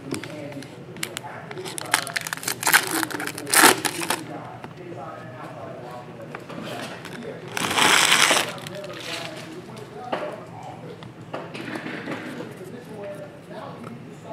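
Foil trading-card pack wrappers crinkling and being torn open, with cards handled and shuffled, in several short bouts; the loudest burst of foil rustling comes about eight seconds in. Faint voices underneath.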